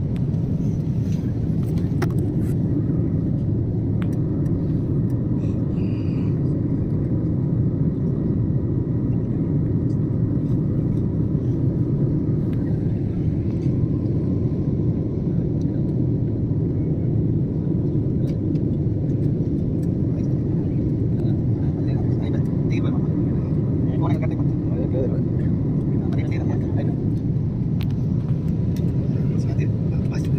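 Steady low roar inside a jet airliner's cabin in flight: engine and airflow noise, unchanging throughout.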